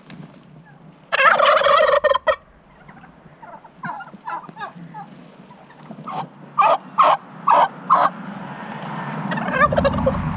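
Domestic turkey toms gobbling: one long, loud gobble about a second in, scattered softer calls, then a run of about five short, loud gobbles between six and eight seconds.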